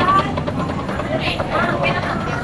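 Street crowd ambience: indistinct chatter of passers-by over a steady low background rumble.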